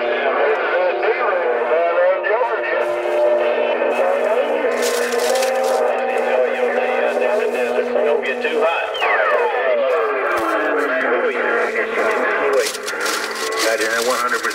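CB radio speaker carrying garbled, overlapping voices of distant stations received on skip, mixed with two steady tones. About nine seconds in, a long whistle falls in pitch.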